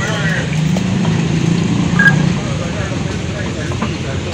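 Outdoor street ambience: people talking in the background and a motor vehicle engine running, with a brief high beep about two seconds in.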